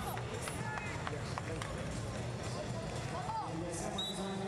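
Wrestling arena ambience: distant voices and shouts from coaches and spectators over a steady low hum, with a few short squeaks from wrestling shoes on the mat and some knocks.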